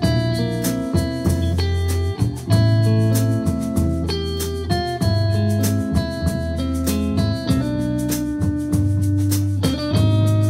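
Instrumental band of electric guitar, electric bass and drum kit playing: the electric guitar plays changing single notes over a steady bass line, with a regular cymbal beat.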